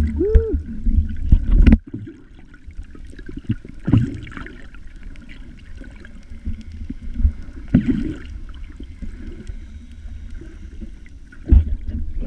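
Muffled water sounds from a camera held just below the sea surface: sloshing and gurgling, with a heavy low rumble that cuts off suddenly about two seconds in. Swells of splashing follow at about 4 s, 8 s and near the end. A short tone that rises and falls sounds once near the start.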